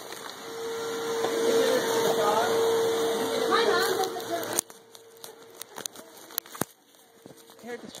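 Vacuum cleaner running with a steady whine, getting louder over the first few seconds, then dropping off sharply about halfway through so that only a faint whine remains.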